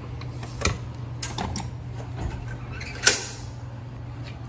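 A keycard swiped at a door's card reader, with small clicks and rattles, then a sharp click about three seconds in as a glass entry door is unlatched and pushed open, over a steady low hum.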